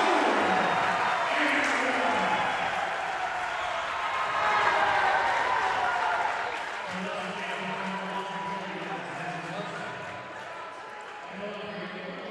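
Gym crowd cheering and applauding a made and-one basket, with many voices mixed in, loudest at first and again about five seconds in, then dying down.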